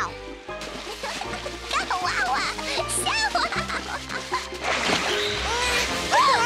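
Cartoon background music score with held bass notes changing every second or so and a melody over them, with short wordless vocal sounds from a cartoon character mixed in.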